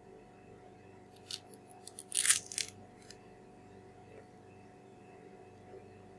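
Banana being peeled by hand: a few small clicks as the stem end is snapped open, then a short tearing rip of the peel about two seconds in, and one last click about a second later.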